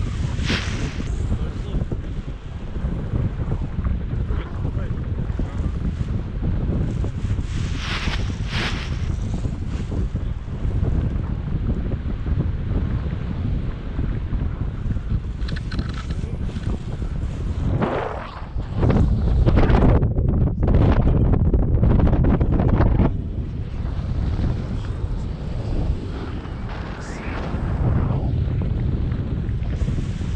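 Wind rushing over the camera microphone during a tandem paraglider flight: a steady low rumble that swells louder for about four seconds past the middle, with a few brief gusty flurries.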